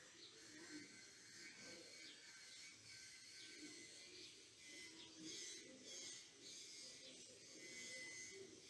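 Near silence: quiet room tone with a few faint, short, high chirps in the background.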